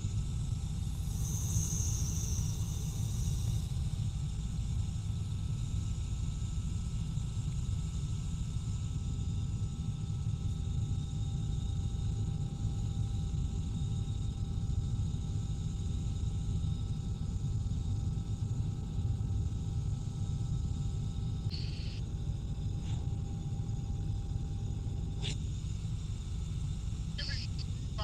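Small helicopter in flight, heard inside the cabin: a steady low rumble from the engine and rotor, with a few faint steady whining tones above it. A few brief clicks come near the end.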